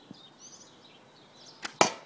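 A handmade longbow shooting: the bowstring is released and the field-point arrow strikes the target a moment later, heard as two sharp cracks close together near the end, the second louder.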